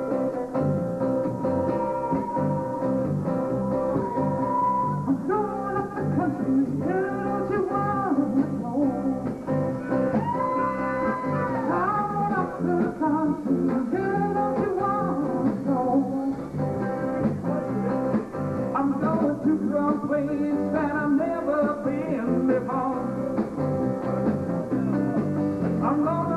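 Live blues band playing: acoustic guitar strumming with electric guitar, and a harmonica playing long held and bending notes over them.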